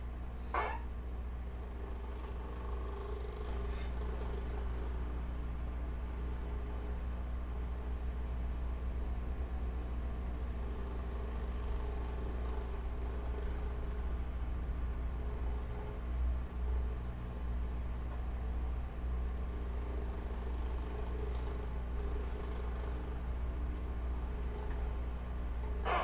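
Steady low hum with faint background noise from an open microphone while no one speaks, with a single click about half a second in.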